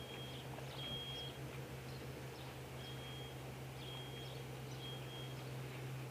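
Faint outdoor ambience: a steady low hum, with a thin high tone repeating in short pulses about once a second and a few faint high chirps.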